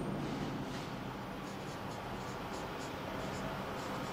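Marker pen writing on a whiteboard: a run of short, irregular strokes over a steady background hiss.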